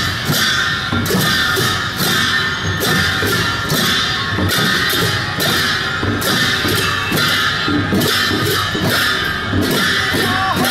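Procession music from hand-played Limbu barrel drums (chyabrung): a steady beat of about two strokes a second, each stroke with a bright clashing edge.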